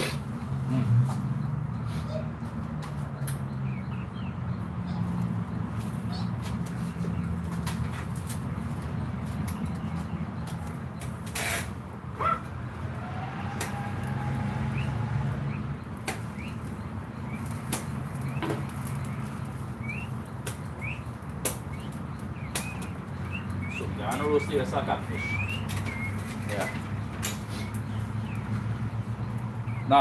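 Outdoor ambience: a steady low rumble with scattered clicks, faint voices, and a few short bird chirps in the second half.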